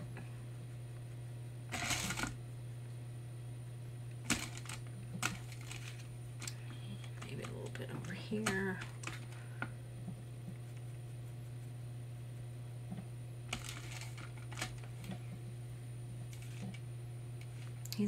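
Steady low hum with a few faint clicks and taps scattered through it, and a brief soft murmur about eight seconds in.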